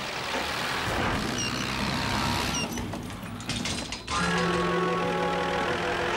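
Small tractor engine running steadily as it drives, with two short high chirps over it; about four seconds in, background music with held notes comes in.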